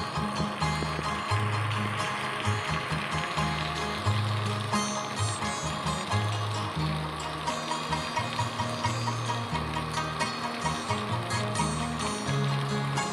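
Steady rain falling, mixed with background music: a low bass line that changes note every second or so, with a regular pulse.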